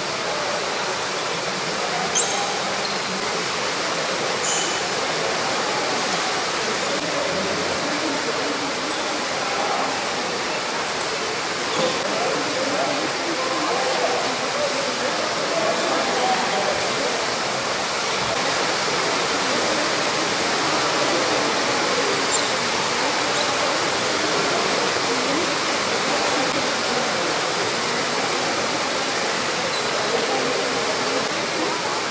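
Steady hiss over faint murmuring voices, with a few light sharp clicks of a table tennis ball being hit.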